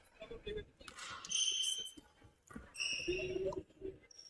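Basketball gym sounds during a free throw: a ball bouncing on the wooden court, two brief high sneaker squeaks about a second and a half and three seconds in, and faint voices in the hall.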